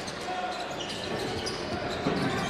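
Live basketball court sound: a ball bouncing on the hardwood floor, with a few short high squeaks from sneakers over the murmur of the arena crowd.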